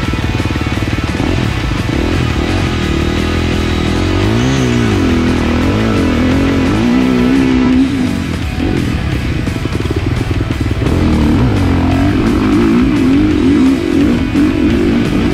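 Husqvarna dirt bike engine revving up and down as the bike is ridden along a muddy track, with music playing over it.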